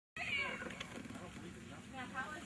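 A German Shepherd Dog gives a high, whining yelp that falls in pitch just after the start, followed by fainter vocal sounds.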